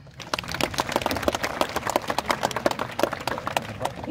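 Audience applauding: a dense, irregular patter of many hand claps that begins a moment in.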